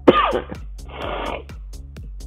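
A man's brief falling vocal sound followed by a breathy exhale, over background music with a steady ticking beat.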